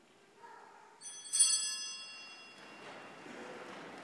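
A small bell rung about a second in, its bright, high ringing dying away over a second or two: the signal that the Mass is beginning. It is followed by the rustle and shuffle of a congregation rising to its feet in a large church.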